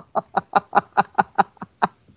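A person laughing in short, rapid bursts, about five a second, with the laugh stopping just before the end.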